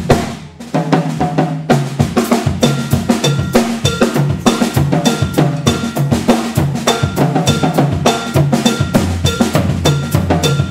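Live jazz fusion band playing a percussion-heavy groove on drum kit, congas and electric bass. The band breaks off for a moment about half a second in, then comes back in. A high, bell-like strike repeats through the groove.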